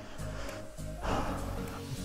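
Background music with steady held low notes.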